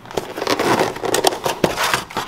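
Clear plastic clamshell food container being pried open by hand, the thin plastic crackling with a run of sharp clicks and snaps.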